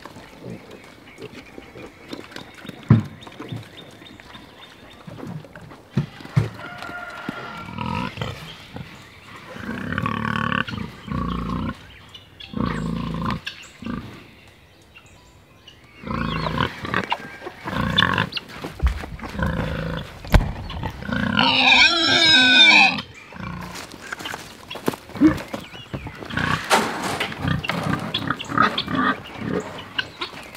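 Pigs grunting irregularly as they feed and root about, with a drawn-out pitched call lasting about two seconds, around two-thirds of the way in.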